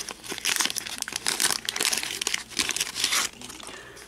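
Paper wax-pack wrapper of a 1988 Fleer baseball card pack crinkling and tearing as it is peeled open by hand, in a string of short rustles that die down near the end.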